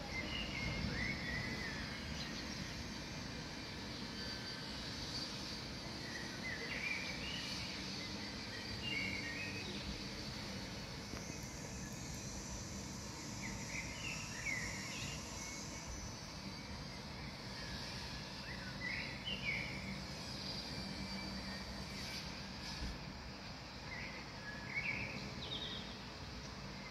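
Outdoor ambience of a steady background hiss, with birds giving short chirping calls in brief bursts every few seconds.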